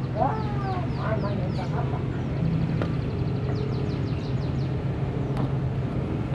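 Steady low motor hum with birds calling over it: a fowl-like clucking call in the first second, and quick runs of high, falling chirps near the start and again past the middle.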